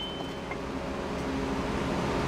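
A steady low hum, slowly growing louder, with the thin ring of the steel motor-mount plate fading out in the first half after it was clinked just before.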